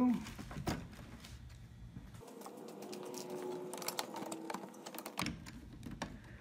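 Scattered light metallic clicks and rattles of a rocker recliner's steel drive rod and mechanism linkage being handled and seated.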